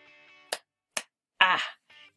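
Two short, sharp clicks about half a second apart, then a brief voiced sound from a woman near the end, the loudest thing heard.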